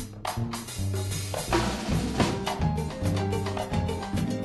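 Big band rhythm section of drum kit, congas, bass and piano playing a basic salsa groove, the bass anticipating rather than playing the downbeats (the tumbao).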